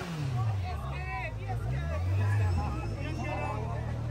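Motorcycle engine idling, with its pitch falling just after the start and rising again briefly about one and a half seconds in. The chatter of a crowd close around the bike runs over it.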